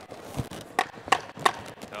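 Wooden knocks, a duller one followed by three sharp raps about a third of a second apart: the timekeeper's clapper signalling the last ten seconds of the round.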